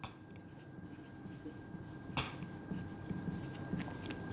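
Marker pen writing on a whiteboard: faint scratching strokes as a word is written, with one sharper stroke about two seconds in.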